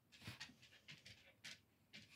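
Near silence, with a few faint, short, irregularly spaced noises.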